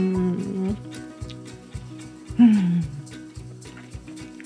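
Background music with a steady beat, under a woman's closed-mouth 'mmm' hums of enjoyment while chewing. One held hum fades out under a second in, and a louder, falling 'mmm' comes about two and a half seconds in.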